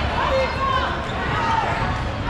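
Gym ambience during a dodgeball game: rubber dodgeballs bouncing on the court floor among players' voices and short squeaks of shoes, in a large echoing hall.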